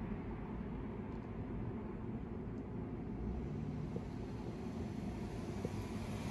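A steady low rumble of outdoor background noise, with no distinct clicks or events.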